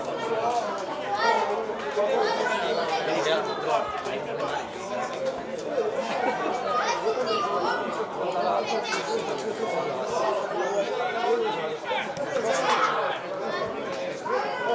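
Indistinct chatter of several voices talking and calling over one another.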